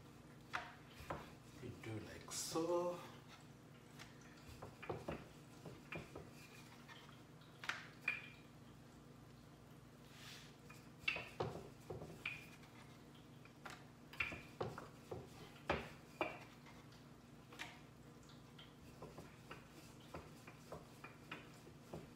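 Wooden rolling pin working chapati dough on a wooden cutting board: scattered light knocks and taps as the pin is rolled, lifted and set down, over a faint steady hum.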